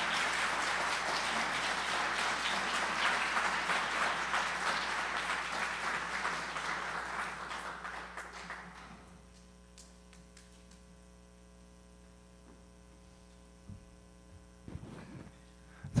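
Audience applauding, fading out about nine seconds in. After that, a steady electrical hum in a quiet room and a couple of faint knocks.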